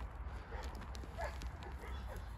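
Faint crackling and rustling of soil and roots as bare-root black walnut seedlings are pulled out of a root ball by hand, with a sharp click at the start and a steady low rumble underneath.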